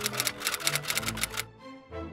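Typewriter keystroke sound effect, a rapid run of clacking keys that stops about one and a half seconds in, over background music.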